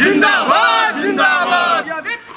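A group of men shouting political slogans in unison, loud and high-pitched, as in a street rally chant.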